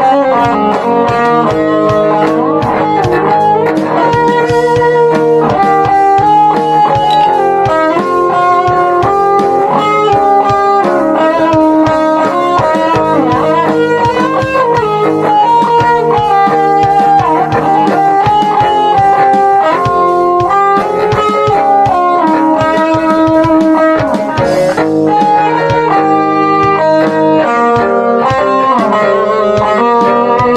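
Two electric guitars, one a Squier, playing a melody line over held chords.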